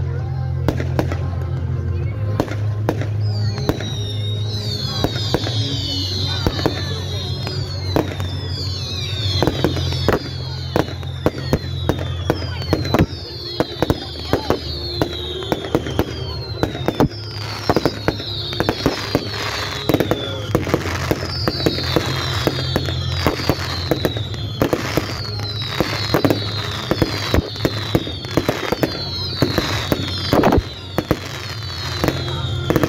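Fireworks going off in quick succession, with many sharp bangs and crackles. From about three seconds in, high whistles falling in pitch repeat every second or two.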